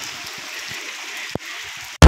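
Steady hiss of heavy rain falling on a concrete rooftop, with one sharp click a little over a second in.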